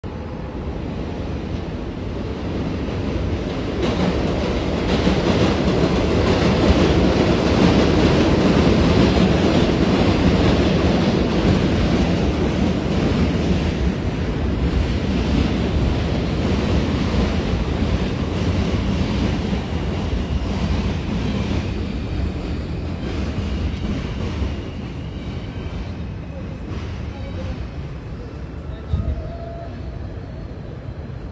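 Subway train running on elevated steel track: a heavy rumble that swells over the first several seconds, then slowly fades.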